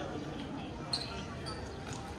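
Indistinct voices over steady background noise, with one sharp knock about a second in.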